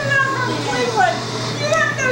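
Several women laughing and shrieking with overlapping excited chatter, over a steady low hum.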